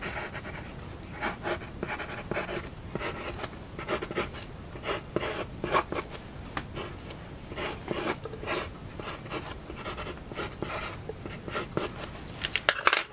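Staedtler Mars Lumograph graphite pencil sketching on paper: a run of quick, irregular scratchy strokes as short lines are drawn one after another.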